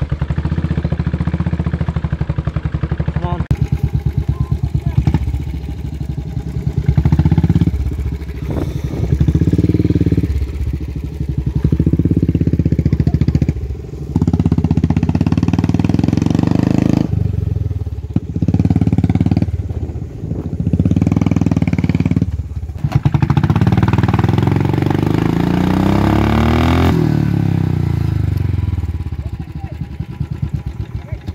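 Royal Enfield Classic 500 single-cylinder motorcycle engine running and revving up and down as the bike is worked through deep muddy ruts. The engine sound drops away sharply several times, and near the end the pitch rises and falls with the throttle.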